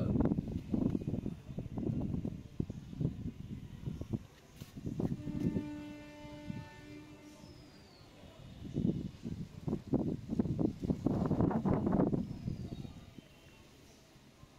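Outdoor sound picked up by a phone's microphone: irregular low rumbling throughout, a steady horn-like tone about five seconds in lasting a second and a half, and two short falling chirps.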